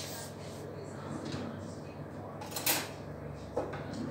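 Kitchen drawers and cupboards being opened and shut, with one sharp clack about two and a half seconds in, over a low steady hum.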